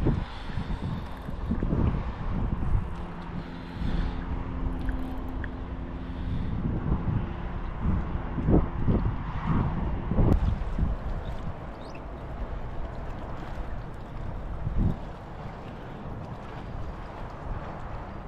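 Wind gusting across an action camera's microphone, a rough, uneven low rumble, with a few short knocks from handling the rod and camera.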